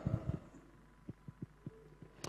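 Quiet pause in speech: the tail of a man's voice dies away, then four faint, short low thumps come about a fifth of a second apart in the middle, over faint room hum.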